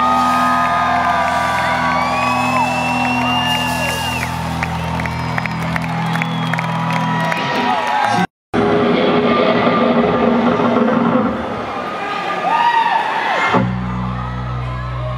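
A rock band's held closing notes ringing under a concert crowd cheering and whooping, with high gliding whistles and shouts. A brief total dropout just past 8 s, then the crowd keeps cheering in the pause between songs, and a low sustained keyboard or bass tone starts again near the end.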